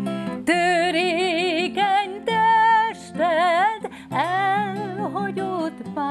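A woman singing a slow refrain with wide vibrato, accompanying herself on acoustic guitar, with short breaks between phrases.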